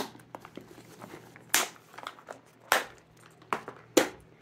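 A clear plastic tackle box and a soft fabric tackle bag being handled. Several sharp plastic clacks and knocks come about a second apart, with faint rustling between them.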